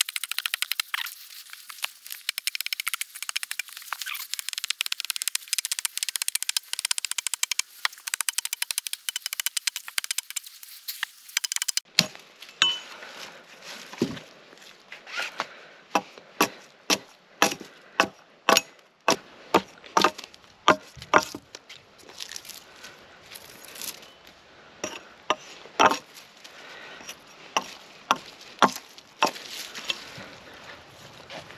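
Hatchet chopping at a cedar log to strip its bark and hew it. For about the first twelve seconds there is a fast, thin, high clatter of many quick strikes. After a sudden change there are separate sharp chops, about one and a half a second.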